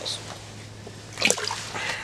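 Small trout released back into the water of an ice-fishing hole, making a brief splash about a second in.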